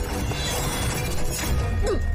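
Dramatic film score under fight-scene sound effects, with a sweeping whoosh that glides down in pitch near the end.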